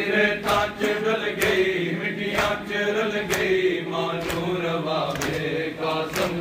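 A group of men chanting a Punjabi noha in unison, with a sharp chest-beating slap of matam on each beat, about one strike a second.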